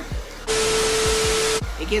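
Hand-held hair dryer with a comb attachment blowing: a loud, even hiss with a steady motor whine, starting suddenly about half a second in and cutting off after about a second.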